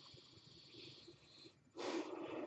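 Faint breathing through the nose close to the microphone: a soft hiss for about a second and a half, then a louder, sharper intake of breath near the end.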